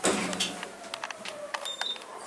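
Otis traction elevator car riding, heard from inside the cab: a sudden sweep falling in pitch at the start, a faint steady hum that slides slightly lower, scattered light clicks, and a short high beep near the end.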